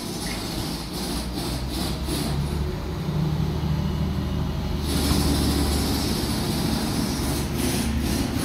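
A low, steady machine rumble, like a workshop compressor or engine running. About five seconds in, a steady hiss of compressed air starts and keeps going.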